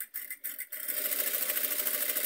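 Domestic sewing machine starting up about a second in after a few light clicks, then running steadily at speed. It is sewing a long straight gathering stitch at its longest stitch length along a tulle ruffle strip.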